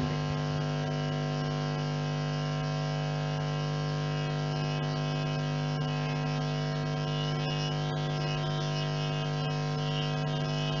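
Steady mains hum coming through a public-address system: an unchanging low buzz with many overtones.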